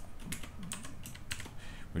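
Keystrokes on a computer keyboard: a quick, irregular run of key clicks as a line of code is typed.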